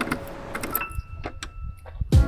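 A few light clicks and clinks over faint background noise, with a thin ringing tone in the second half.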